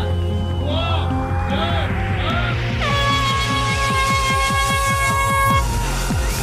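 An air horn sounds one long blast of about three seconds, starting about halfway through, over background music that builds with a rising sweep. The horn is the signal for a mass start of mountain bikes.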